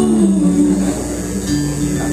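Indie folk-rock band playing live between sung lines: strummed guitar over bass and drums, heard from the audience in a hall.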